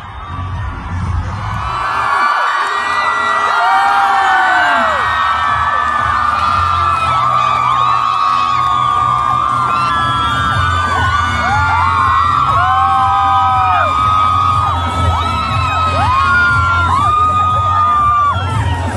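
A large crowd cheering, shouting and whooping loudly and without a break, rising over the first couple of seconds and then holding, many voices overlapping.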